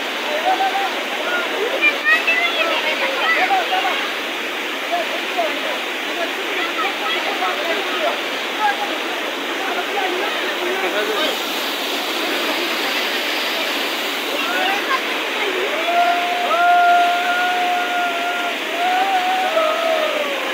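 Torrent of water rushing over a rocky mountain path, a steady noise throughout. Voices call over it, with a long held shout near the end.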